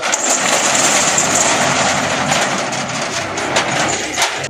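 Rolling steel shop shutter being pulled down, a long, steady metallic rattle.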